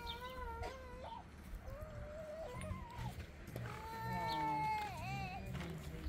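A cat meowing: three long drawn-out meows that bend up and down in pitch, the last and loudest near the end.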